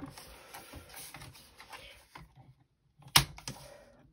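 Sliding-blade paper trimmer in use on laminated plastic: faint scraping and light plastic clicks, then one sharp click about three seconds in.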